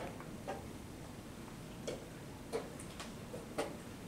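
Scattered sharp wooden clicks and taps of chess pieces being set down and chess clocks being pressed at nearby boards. There are about five in four seconds at uneven intervals, the loudest near the end, over a low steady hall background.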